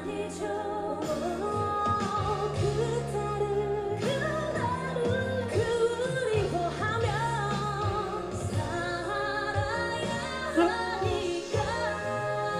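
Female vocal group singing a medley live over instrumental accompaniment, with wavering held notes over steady low backing chords.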